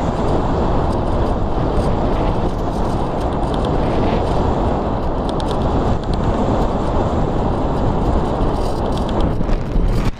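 Steady rush of airflow over the microphone of a camera mounted on an RC glider in flight.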